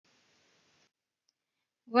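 Near silence: faint hiss that drops out about a second in, then a voice starting near the end.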